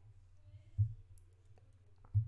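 A low thump a little under a second in, then a few faint clicks, over a steady low hum.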